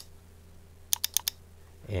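Four quick computer clicks in a row about a second in, made while using an editing program, over a faint steady low hum.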